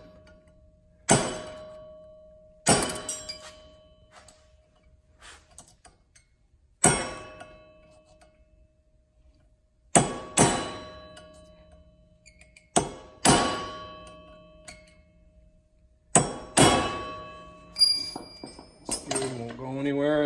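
A short-handled sledge hammer striking a steel punch to stake the axle nut's collar down, so the nut on the ATV's front axle won't back out. About ten sharp metallic blows come in ones and pairs with pauses of one to four seconds between them, each ringing briefly.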